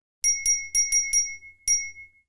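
A rapid string of bright, bell-like notification chimes, six sharp dings that each ring briefly. Five come in quick succession and a last one comes near the end. The chimes are a sound effect for a barrage of game system notifications arriving at once.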